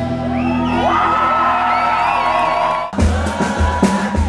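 Live band music: a held chord with whoops and yells from the crowd sliding over it, then about three seconds in the full band cuts back in with a drum groove and a long held note.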